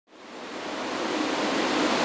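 Cooling fans of several GPU mining rigs running together: a steady rushing hiss with a faint low hum, fading up from silence in the first half-second.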